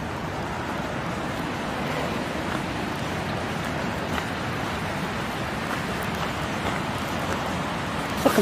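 Steady, even rushing of a fast-flowing river swollen by heavy rain, with outdoor wind and rain noise mixed in.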